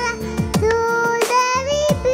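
A young girl sings a Mappila song into a headset microphone over backing music with a drum beat, holding long notes.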